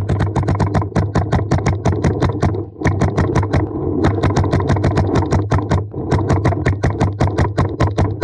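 Paintball marker firing in rapid streams of about ten shots a second, with short breaks about three seconds in and again between five and six seconds.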